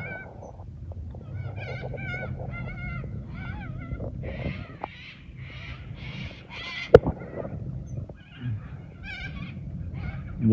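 Waterbirds calling: a run of short, wavering calls about two a second, with harsher calls in the middle and a single sharp click about seven seconds in, over a low steady hum.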